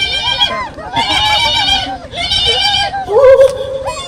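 Loud live orchestra-show music over a PA system. It is a wavering, vibrato-heavy melody in short repeated phrases about once a second, from a singing voice or keyboard.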